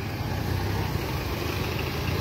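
A car engine running at low speed: a steady low hum with street noise, no single event standing out.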